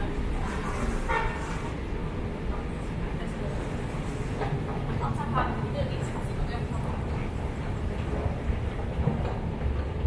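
Steady low rumble of an underground station concourse, echoing off the tiled tunnel walls, with faint voices now and then.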